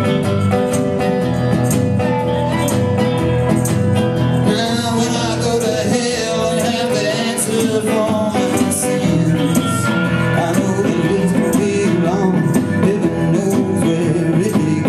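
Blues band playing live: electric and resonator guitars over upright bass, congas and drum kit, with no vocals. The playing grows busier and brighter about four and a half seconds in.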